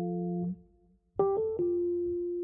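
Rhodes electric piano: a held chord is let go about half a second in, leaving a short near-silent gap. A new phrase then starts with a few struck notes, the last one left ringing.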